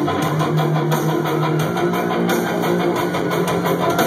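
A live pop-punk rock band playing loud and steady: electric guitars, bass and a drum beat.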